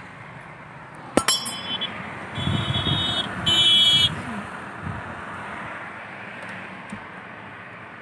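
Three short, high-pitched honks from a vehicle horn about a second apart, starting a second in. They sound over the steady hum of a car's cabin crawling in heavy traffic.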